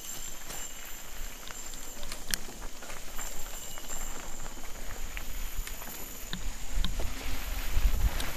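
Mountain bike rolling down a dirt forest trail: tyre noise over dirt and leaves with frequent small clicks and rattles from the bike. Wind rumble on the helmet microphone grows near the end as the bike picks up speed.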